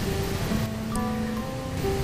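Soft background music of long held notes, changing chord about midway, over a steady low hiss.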